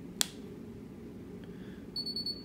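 A single sharp click from a thumb pressing the power button on a CustomCARE frequency-specific microcurrent unit. Right at the end, a short high electronic beep starts as the unit switches on.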